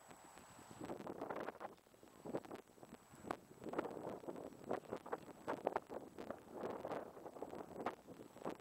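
Wind gusting across a pocket camera's microphone, swelling and fading with sharp crackles and knocks as it buffets the mic.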